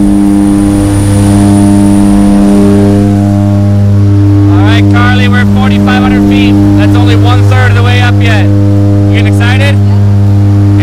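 Loud, steady drone of the jump plane's propeller engines heard from inside the cabin, with voices talking over it from about halfway through.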